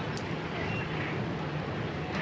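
Steady low background rumble and hum that does not change, with one brief faint click about a fifth of a second in.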